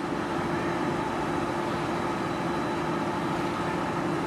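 Police patrol car running at idle: a steady, even hum that holds without change.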